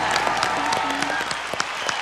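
Audience and judges applauding: a dense, steady patter of many hands clapping at the end of a song.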